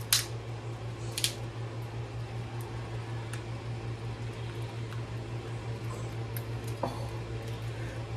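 Lobster shell being pried apart by hand, with two sharp cracks in the first second or so, then quieter handling. A steady low hum runs underneath.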